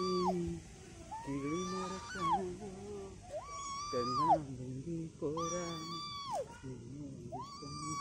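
Swing hangers squeaking on a metal swing set as it swings: a drawn-out, steady-pitched squeal that falls away at its end, repeating regularly about every two seconds with each swing.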